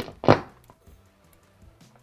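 Two sharp clicks about a third of a second apart, the second louder: the two footswitches of a Chase Bliss CXM 1978 reverb pedal being pressed down and held by hand while the pedal is unpowered, to enter its MIDI-channel setup.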